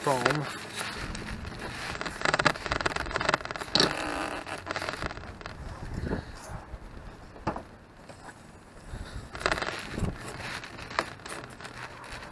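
Intermittent scraping and crackling as a pine block glued to rigid foam insulation board is gripped and twisted by hand, with bursts of handling noise in between. The Titebond wood-to-foam bond holds and the block will not budge.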